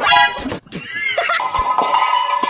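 A high-pitched animal call, followed by a second call that rises and falls. Music comes in about a second and a half in.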